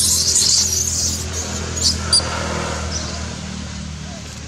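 Baby macaque screaming in distress, loud and high-pitched for about the first second, then two short sharp squeaks about two seconds in. It is the cry of a baby being handled roughly by its mother.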